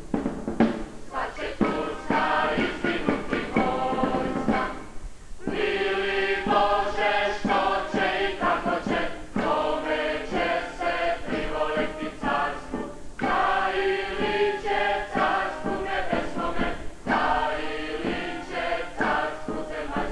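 A choir of voices singing a chant-like song over a regular beat, breaking off briefly about five seconds and again about thirteen seconds in.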